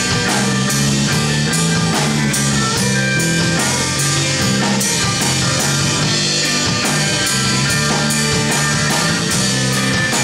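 Live rock band playing an instrumental passage: electric guitars, bass guitar and drum kit, with no singing. The level stays loud and even.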